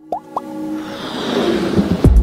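End-screen animation sound effects: two quick rising bloops near the start, then a music swell of held tones and growing noise that builds steadily louder toward a hit at the end.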